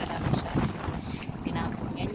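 Strong wind buffeting a phone's microphone: an uneven low rumbling noise that gusts up and down.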